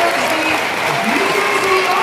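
Audience applauding, steady clapping throughout, with a man's voice over it.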